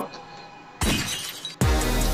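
A sudden burst of shattering glass, an added sound effect, about a second in, trailing off quickly; background music with a heavy bass then comes in.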